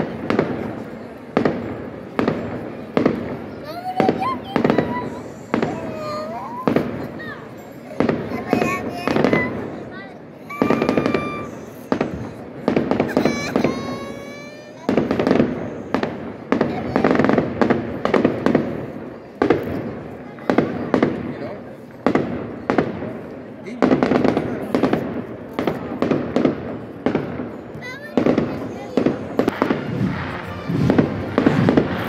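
Fireworks going off repeatedly overhead, sharp bangs about every second, over a large crowd talking and cheering. A few whistling tones come through in the middle.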